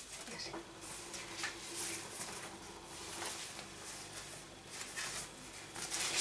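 Faint rustling of a thin synthetic fold-up shopping bag being handled and shaken out, with a low steady hum beneath it.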